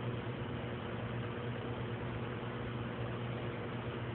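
A steady low machine hum with a few constant tones and an even hiss that does not change.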